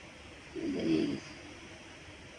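A person's short, low moan or hum, lasting under a second, about half a second in.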